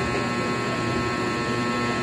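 A steady electrical hum with a background hiss that does not change.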